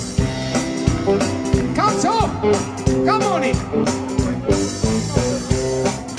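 Live band playing an upbeat number: drum kit keeping a steady beat under piano, electric guitars and saxophone, with a few short sliding melodic phrases about two and three seconds in.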